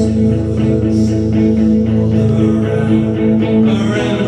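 Electric guitar played through a small amplifier: an instrumental stretch of a song, with chords held and strummed at a steady pulse.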